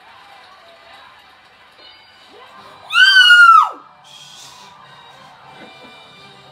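Game-show TV sound with music and crowd faint underneath. About three seconds in, a person close by lets out a loud, high-pitched scream of under a second whose pitch drops as it ends: a cheer at the winning answer.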